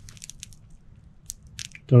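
Faint, scattered creaks and ticks of a bungee-cord magazine retainer and its nylon pouch straining as a rifle magazine is pulled against it. The cord is stressing its anchor point hard enough to sound as if it is trying to tear away.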